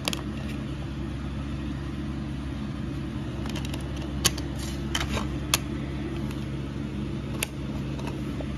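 Short sharp clicks and taps of a plastic DVD case and its discs being handled, half a dozen scattered through, over a steady low hum.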